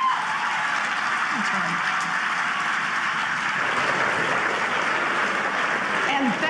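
Audience applauding: a dense, steady clapping from a large crowd.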